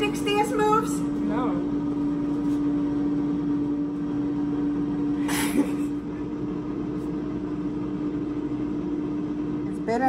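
Air fryer running while it cooks, a steady hum with one droning tone, broken about halfway by a brief hiss.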